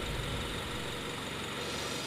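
A quiet, steady mechanical hum like an idling engine, with an even hiss over it and no distinct events.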